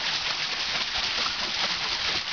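Steady rush and splash of creek water pouring onto and off the paddles of a turning wooden water wheel.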